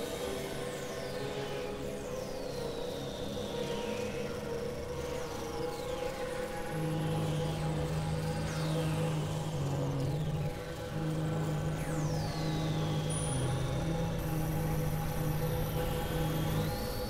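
Experimental electronic synthesizer drone music: steady held tones, with a lower tone coming in about seven seconds in, and high sweeping tones that fall in pitch every two or three seconds.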